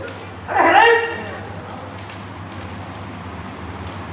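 A kendo practitioner's kiai: one loud, high-pitched shout lasting about half a second, about half a second in, over a steady low hum.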